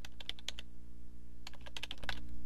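Typing on a computer keyboard: a quick run of key clicks, a pause of about a second, then another run of clicks, over a steady low hum.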